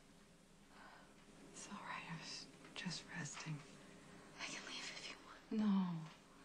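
A woman whispering softly in short breathy phrases, then her voice coming in aloud with a falling pitch near the end.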